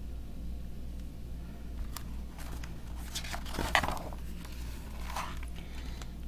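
A page of a hardcover picture book being turned and the book handled: a few short paper rustles and soft clicks, spaced out, over a steady low hum.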